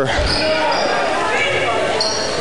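Basketball game sounds in a school gymnasium: a basketball bouncing on the hardwood court, with a low thud just after the start, and voices echoing in the large hall.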